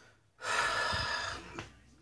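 A man's long audible breath, lasting about a second, starting about half a second in.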